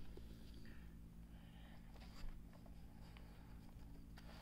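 Near silence: a faint steady low hum, with a light knock about two seconds in as the amplifier plate is handled.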